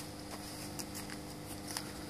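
A faint steady background hum with a few soft clicks.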